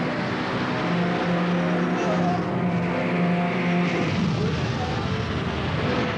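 Cartoon action sound effect: a loud, steady whirring roar like a racing motor, with a held low hum from about one to four seconds in.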